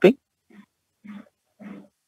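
A man's voice breaks off at the start, then four faint, short computer-keyboard key presses follow, evenly spaced a little over half a second apart, as the text editor's cursor is stepped up line by line.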